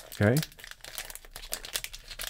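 Clear cellophane wrap crinkling in a quick, irregular run of small crackles as it is handled and worked off a plastic one-touch card holder.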